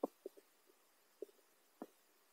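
Underwater ambience: soft, short clicks and knocks at irregular intervals, about six in two seconds, the loudest right at the start.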